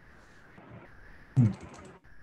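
A few computer keyboard key clicks heard over a video-call microphone, coming together with a short spoken 'hmm' about one and a half seconds in.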